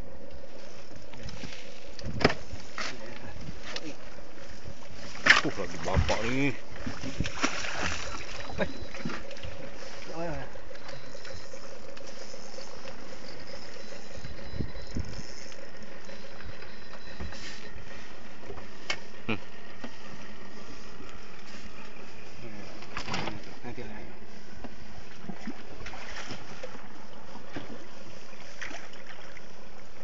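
Steady hum and rush of a small boat's engine at sea, mixed with wind on the microphone, broken by a few sharp knocks and brief indistinct voices.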